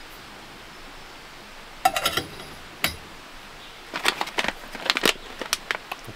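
A bag of coffee being handled and opened: short, sharp crinkles and rustles, a cluster about two seconds in, then a quicker run of them from about four seconds in.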